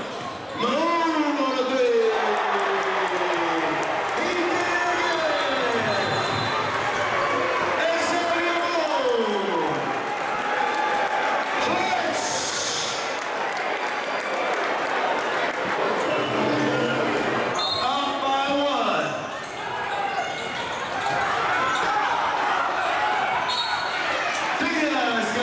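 A basketball being dribbled on a hardwood gym court under steady crowd noise, with several long drawn-out voices sliding down in pitch.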